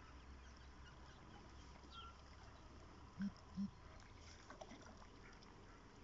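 Two short duck quacks in quick succession about three seconds in, over faint, otherwise near-silent pond ambience.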